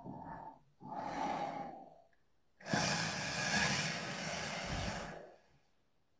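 Heavy, breathy exhalations close to the microphone in three bursts: two short ones, then a long one lasting about two and a half seconds.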